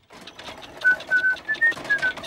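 A cartoon cat whistling a short carefree tune, the notes climbing and then falling, over a light clicking and rattling from the rolling hand trolley.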